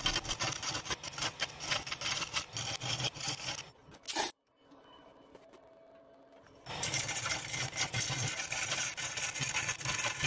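A captured hollowing bar cutting inside a spinning hollow form on a wood lathe, a dense, scratchy scraping of the cutter on the end grain. About four seconds in it stops after a short burst, goes nearly quiet for a few seconds, and resumes about seven seconds in.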